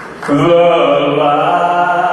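A man singing one long held note into a microphone, beginning about a third of a second in with a slight upward bend and then held steady.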